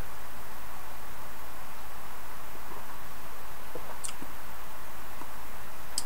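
Steady room hiss with no other sound, apart from one faint small click about four seconds in.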